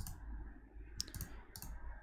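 A few faint clicks from computer input, one about a second in followed by a short cluster of lighter ones.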